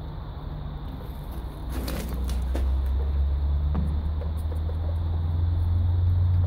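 A low, steady engine-like rumble that swells about two seconds in and then holds, with a few faint clicks around the time it swells.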